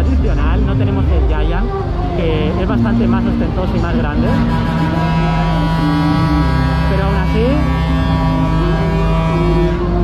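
Loud fairground din: voices and music from loudspeakers. From about four seconds in, a steady buzzing, horn-like tone holds for about six seconds.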